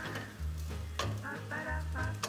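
Rice and chopped onion sizzling in a copper saucepan as they are stirred with a wooden spoon, the rice toasting in the onion before the wine goes in. Background music plays over it.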